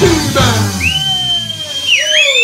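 A live band with bass guitar, drum kit and electric guitar plays the close of a song, and the band sound thins out about a second in. A long, steady high whistle then holds over it, dipping and rising again at the very end, with lower notes sliding downward beneath it.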